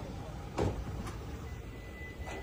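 Low steady rumble of a vehicle, with a heavy thump about half a second in and a lighter knock half a second after, as the metal bed of a pickup truck is handled and opened.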